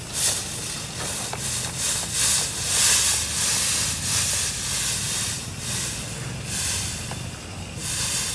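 Butane-heated thermal fogger in fogging mode: a loud hiss of diesel flashing to vapour in the hot coil and jetting out as fog. The hiss swells and eases every half second to a second as diesel is pumped in, over a steady low burner rumble.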